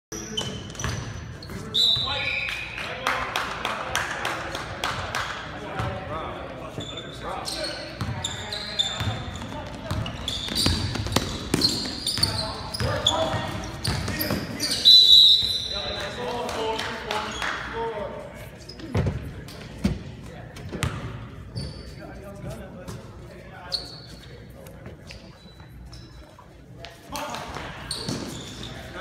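Basketball game on a hardwood gym floor: the ball bouncing in sharp knocks, sneakers squeaking, and spectators and players talking and shouting, all echoing in the hall. The loudest moment is a sudden burst about halfway through.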